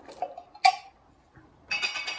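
Handling noises at a screen-printing table: a few light clicks and one sharp clink with a brief ring, then a quiet gap and a scraping noise starting near the end.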